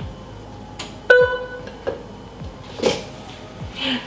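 Sparse background music: a plucked-string note rings out about a second in and fades, with a couple of other brief noises later.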